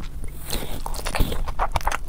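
Close-miked eating sounds: wet mouth clicks and smacks as a handful of biryani is pushed into the mouth by hand and chewed, starting about half a second in.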